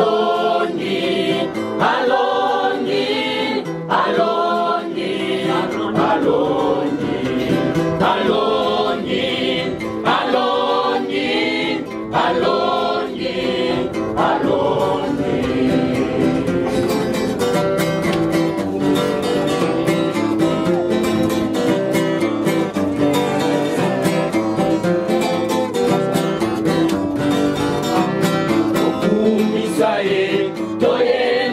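A small group of young voices singing a worship song together, accompanied by strummed acoustic guitar.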